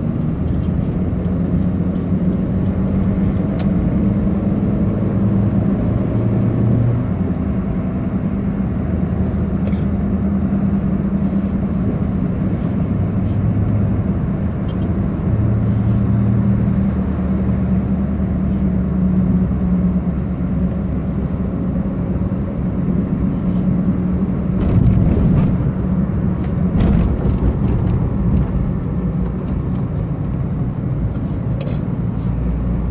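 Car engine and road noise heard from inside the cabin while driving: a steady low hum whose engine pitch shifts every few seconds as the speed changes.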